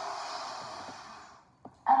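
A woman's long, deep in-breath, a steady rush of air that fades away over about a second and a half. A faint click follows in the short pause before she speaks again.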